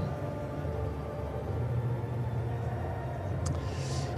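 Steady low outdoor background rumble, like distant traffic or machinery, with no speech over it. Near the end comes a short click and a quick breath in.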